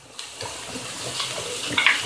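Chopped green bell pepper sliding off a dish into a pan of hot olive oil, setting off a sizzle that builds steadily louder.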